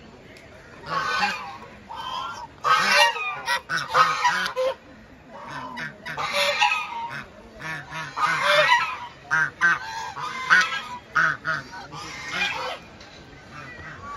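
A group of domestic geese honking over and over, in loud bursts of calls every second or two.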